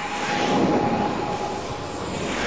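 Engine noise: a rushing hiss with a steady high whine, swelling about halfway through and easing off near the end.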